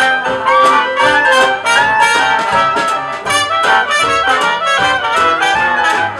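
Live hot swing jazz band playing an instrumental passage, brass horns leading over a steady beat of about four strokes a second.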